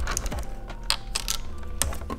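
A few light, sharp clicks and small handling noises of hands working vinyl tint film and its masking tape with a small plastic squeegee.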